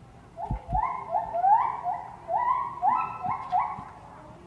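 A quick run of about ten short, pitched animal calls over some three seconds, each sliding up at its start and then holding, with two dull thumps just before the calls begin.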